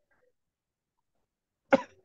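A single short cough near the end, after near silence.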